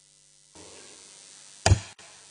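A single sharp knock close to a desk microphone near the end, with a brief ring after it, over faint room hiss.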